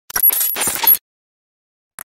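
A burst of metallic clinking and jingling, like coins spilling, lasting about a second with a few high, bright rings in it.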